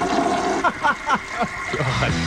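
Toilet-flush sound effect draining away, with a run of short falling gurgles in the second half.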